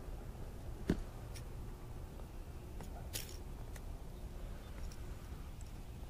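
Faint clicks and rustles of a hook and topwater lure being worked out of a small bass's mouth by hand, with one sharp click about a second in and a few softer ones later, over a low steady rumble.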